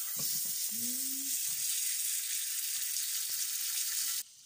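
Butter sizzling steadily in a hot frying pan.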